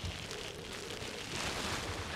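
Faint, steady background hiss with no distinct events: outdoor ambience.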